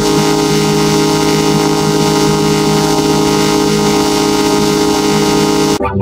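Loud, heavily distorted sustained chord from an effects-processed TV station logo jingle, held steady with a hiss over it, then cutting off suddenly near the end.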